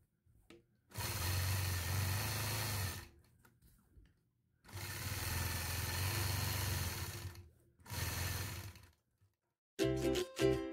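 Sewing machine with a ruler foot stitching in three runs, each a second or two to about two and a half seconds long, stopping briefly in between as the ruler is repositioned.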